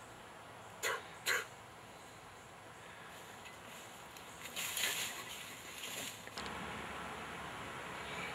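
An axe chopping into a fallen log: two sharp knocks about a second in, then a rougher burst of strikes around five seconds in.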